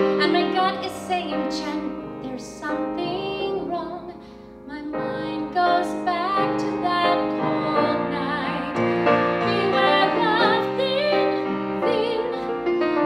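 A woman singing a musical-theatre ballad with piano accompaniment, her held notes wavering with vibrato. The music drops briefly to a quieter passage about four seconds in.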